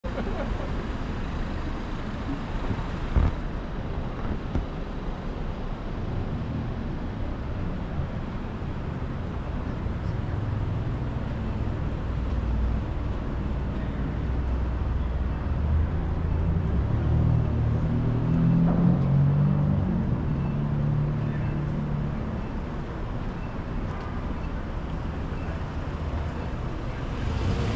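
City street traffic noise: a steady rumble of cars and engines, loudest about two-thirds of the way through when a humming engine sound swells and fades. A single sharp knock comes about three seconds in.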